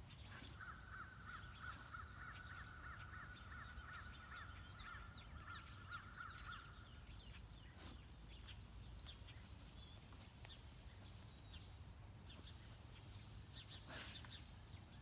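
Faint yard ambience: a long, fast-pulsed animal trill runs for about the first half, with scattered faint high chirps over a low rumble.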